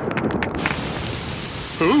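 Cartoon rain sound effect: a steady hiss of falling rain that starts with a quick run of clicks in the first half-second.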